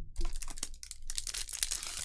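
Foil booster-pack wrapper crinkling and being torn open, with a few light clicks of cards laid down at the start.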